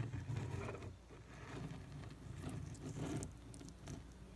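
Light scratching, rubbing and tapping of fingers handling a small sculpture close to the microphone, in short irregular bits.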